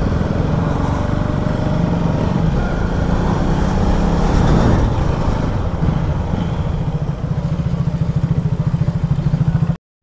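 A KTM Duke's single-cylinder engine running steadily on the move, with wind noise over it. From about six seconds in the engine settles into an even, rapid pulsing. The sound cuts off suddenly near the end.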